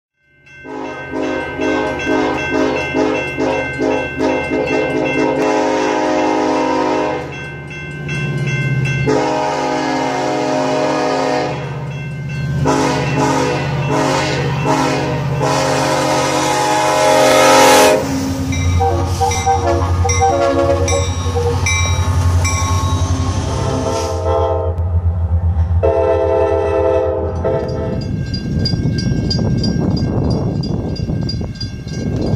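Diesel freight locomotive's air horn sounding a chord in a series of long blasts with short gaps, over the low drone of the locomotive's diesel engine. The horn stops about two seconds before the end, leaving a rumble.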